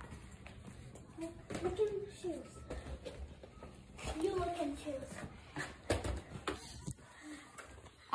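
Faint, indistinct children's voices with a few light knocks and rattles of things being handled in a small room.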